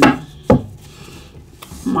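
Tarot cards knocked against the table as one is laid down: a single sharp knock about half a second in, followed by a faint tick.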